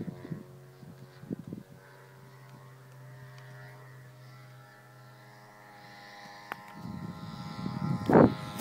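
The four-stroke OS 52 glow engine of an RC model airplane running in flight at a distance: a steady drone with even overtones at nearly constant pitch. A few low rumbles come near the start and again towards the end.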